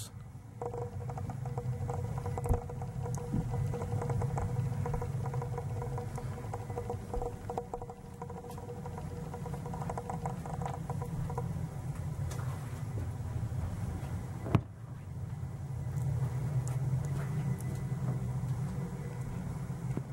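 Natural-gas boiler running in the background: a steady low hum with a few faint steady tones above it. A few small clicks and one sharp click about three-quarters of the way through.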